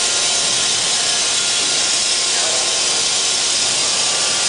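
Loud, steady hiss with a faint steady whine underneath, from a running cassette single facer (corrugated-board machine).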